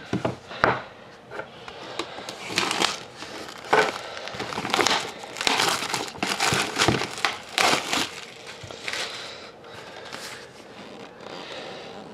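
Plastic shrink-wrap crinkling and crackling as it is cut and peeled off a cardboard trading-card box, in a run of irregular rustles that are busiest in the middle.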